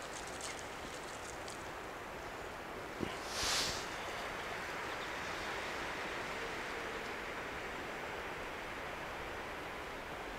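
Quiet woodland ambience: a steady, even hiss of outdoor air. About three seconds in there is a short knock, then a brief higher rustling hiss.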